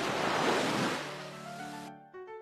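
Sea waves and surf, a rushing wash that fades away over the first second or so as gentle music with held notes comes in.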